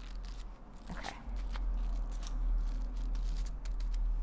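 Aluminium hair foil crinkling and crackling in short irregular bursts as it is folded and pressed closed over a section of hair, over a steady low hum.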